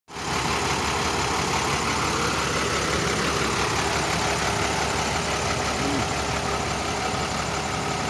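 International flatbed tow truck's diesel engine idling steadily.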